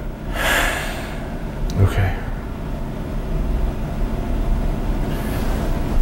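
A man breathing out heavily for just under a second, starting about half a second in, then a soft spoken 'okay', and a fainter breath near the end.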